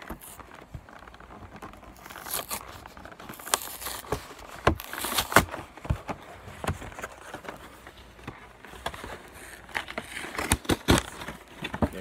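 Plastic wrapping on a trading-card box crinkling and tearing as it is unwrapped, in irregular bursts with sharp clicks and handling knocks. The busiest stretches come around the middle and again near the end.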